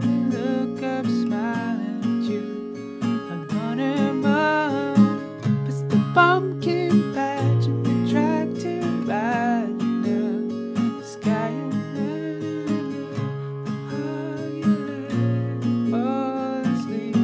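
Steel-string acoustic guitar capoed at the sixth fret, strummed through a G, E minor, C, D chord progression in a down, down, up, up, down pattern, with a man's voice singing the melody over it.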